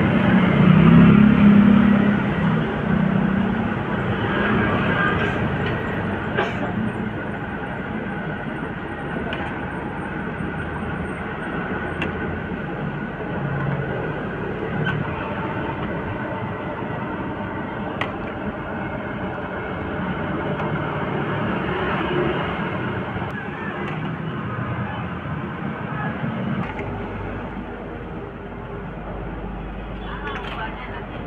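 Tahu aci (tapioca-battered tofu fritters) deep-frying in a wide wok of hot oil: a steady sizzle that is louder in the first few seconds, with a few light clicks from a wire strainer.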